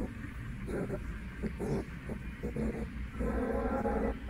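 Indoor ambience: a low steady hum with indistinct voices of people nearby, one held louder near the end.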